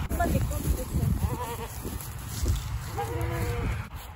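Saanen goat bleating twice, one call about a second in and a second, steadier call about three seconds in, over a low rumble.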